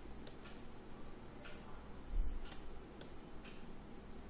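Computer mouse clicking: a handful of single sharp clicks, spaced roughly a second apart, over faint room noise, with a soft low thump a little past halfway.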